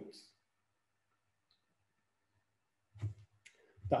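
A man's voice ends a sentence at the very start, then there are nearly three seconds of near silence. About three seconds in comes a short low sound, then a faint click, and the voice starts again at the end.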